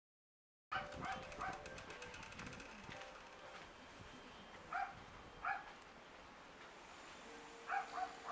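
A dog barking in short, sharp yaps: three quick barks about a second in, two more a little past the middle, and a pair near the end.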